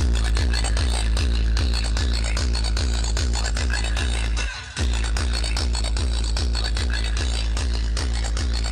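Loud electronic dance music with heavy, sustained bass and a regular beat, played through a large outdoor DJ speaker tower. About four and a half seconds in, the music cuts out briefly and comes back with a falling bass sweep.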